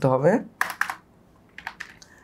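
Typing on a computer keyboard: a quick run of about three keystrokes about half a second in, then another short run of clicks near the end.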